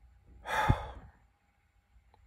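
A man's sigh: one heavy breath out, about half a second in, with a brief low thump in the middle of it.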